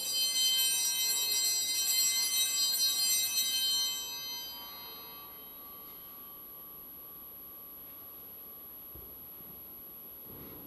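Altar bells rung at the elevation of the chalice: a shimmer of high ringing tones that wavers for about four seconds, then dies away into quiet room tone.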